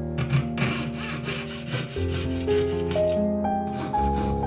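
Hand abrading of a small metal ring blank: quick rasping strokes, several a second, that stop about three seconds in, with a shorter burst near the end. Soft piano music plays under it.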